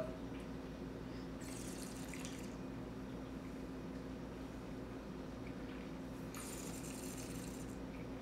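Wine being drawn over the tongue with air and held in the mouth, heard as two short hissing slurps about five seconds apart, over a steady low room hum.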